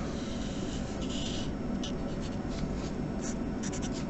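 Felt-tip marker drawing a curve on paper: a scratchy stroke lasting about half a second just after the first second, then a few short quick strokes near the end.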